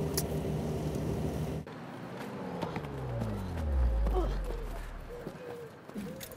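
A car engine running steadily, heard from inside the cabin of an old car, cut off suddenly about two seconds in. Then a vehicle's low hum falls steadily in pitch as it passes, loudest midway and fading out, with a few light knocks.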